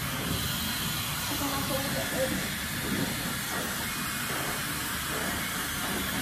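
Handheld hair dryer blowing steadily, an even hiss of rushing air that cuts off suddenly right at the end.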